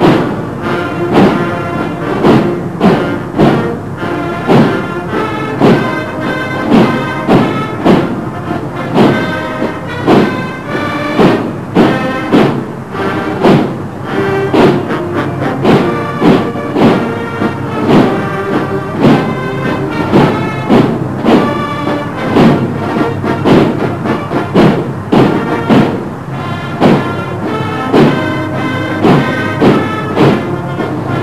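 A military band playing a march, with brass carrying the tune over a steady, heavy drum beat of about one and a half beats a second.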